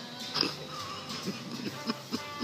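People laughing in short pulsing bursts, over faint background music.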